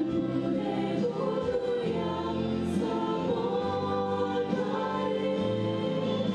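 A small group of young women singing a hymn together into microphones, in long held notes.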